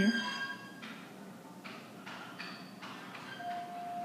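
Faint elevator hall chime tones ringing out after a waiting call, with a few soft knocks and rustles between them and a steady tone near the end.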